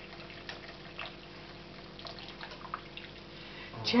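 Tea poured in a thin stream from a small clay teapot, with faint trickling and scattered drips: the first infusion, used only to rinse the leaves, being poured away.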